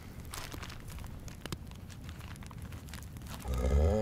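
Food packet being handled and opened, crinkling with many small crackles. Near the end a louder low humming sound with a steady pitch comes in.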